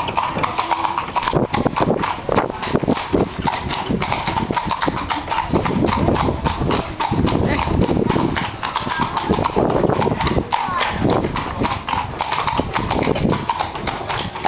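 Hooves of two carriage horses clip-clopping at a walk on cobblestones, a steady rhythm of sharp clicks.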